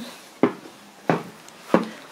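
Footsteps climbing a staircase with wooden treads: three short knocks, about two-thirds of a second apart.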